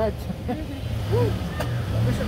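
A few short spoken words over a steady low engine hum, as from a motor vehicle running close by, growing a little louder about a second in; a single sharp click just past halfway.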